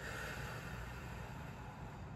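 A soft breath blown out, a faint hiss that fades within the first half second, over steady quiet room hiss.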